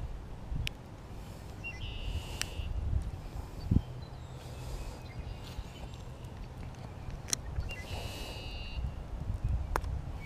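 Low rustling handling noise from hands and sleeves moving close to the microphone while a bass is unhooked by hand, with several sharp clicks scattered through it. Two short high buzzes sound in the background, about two seconds in and again about eight seconds in.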